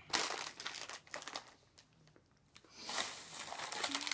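Plastic snack bag crinkling as it is handled and reached into, in two bouts with a short quiet gap about halfway through.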